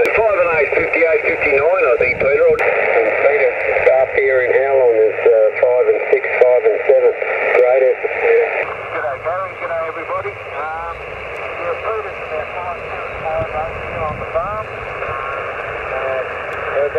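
Single-sideband voice from another amateur station on the 80 m band, heard through a Yaesu portable HF transceiver's speaker: thin, narrow-band speech over steady receiver hiss. The background hiss changes about nine seconds in.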